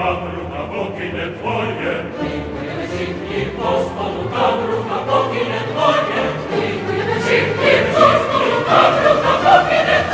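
Operatic ensemble of several voices, choir-like, singing with orchestra. The voices grow louder over the last few seconds.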